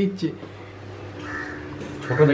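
A crow cawing once, about a second in, over a low steady hum, after a voice trails off.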